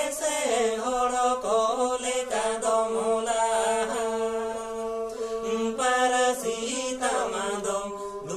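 Two men singing a traditional Santal song together while bowing banam, small carved wooden folk fiddles, the bowed strings holding long steady notes beneath the voices.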